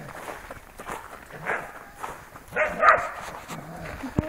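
Border collies barking a few times, about a second and a half in and again near three seconds in, with footsteps crunching in snow between the barks.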